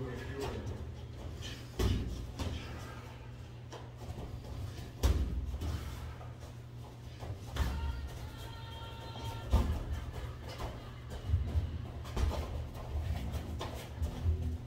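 Boxing sparring: a series of sharp, irregular thumps a second or two apart from gloved punches landing.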